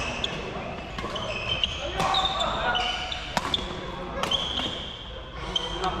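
Badminton rackets striking shuttlecocks in an irregular series of sharp smacks, from this court and neighbouring ones. Short high squeaks of court shoes on the wooden floor run between the hits, all echoing in a large sports hall.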